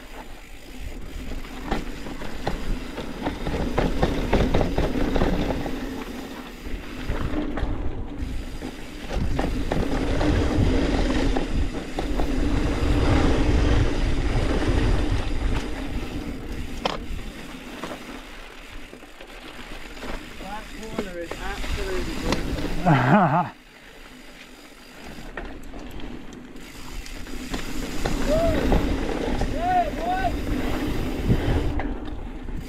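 Mountain bike riding a dirt trail: continuous tyre and drivetrain rumble with wind noise on the microphone. About three-quarters through there is a brief falling squeal, then the noise drops suddenly.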